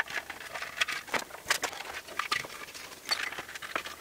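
Scattered light clicks and scrapes of hands feeding a turn-signal wire and contact into a steel Vespa P200E side cowl and working it behind the cowl's little tabs, with a sharper tick at the start.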